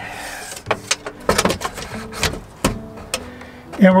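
Tape measure handled against the storage compartment's metal trim: a short sliding rasp at the start, then a string of sharp clicks and taps as the case and blade knock on the frame.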